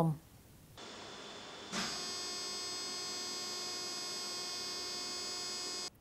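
Radiotherapy treatment machine (a linear accelerator) buzzing while the beam is on. A fainter sound starts about a second in, then the steady buzz with many overtones comes in just under two seconds in, holds level, and cuts off suddenly near the end.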